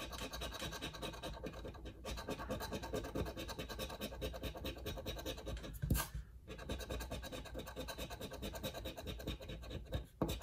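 A coin scraping the coating off a scratch-off lottery ticket in rapid back-and-forth strokes. A sharp tap and a brief pause come about six seconds in.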